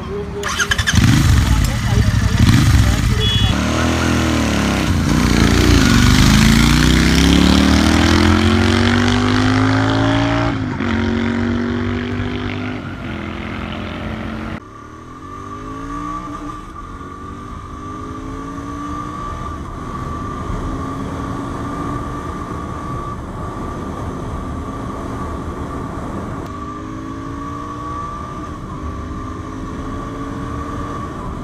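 Royal Enfield Interceptor 650's parallel-twin engine revving and pulling away, its pitch rising steeply as it accelerates. After a sudden break about halfway, it runs at road speed through several upshifts, each a fresh rising pitch.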